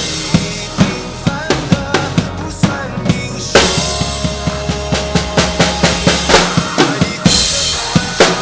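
Acoustic drum kit played live along with the song's recorded instrumental track: a quick run of kick, snare and cymbal hits. There is a big crash with a held low note about three and a half seconds in, and another cymbal crash near the end.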